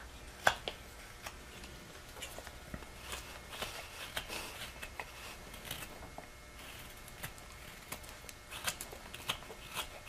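Carving knife with a modified Mora blade taking short slicing cuts in clean basswood: a string of irregular crisp snicks and scrapes, the sharpest about half a second in, a busier run of cuts in the middle and another group near the end.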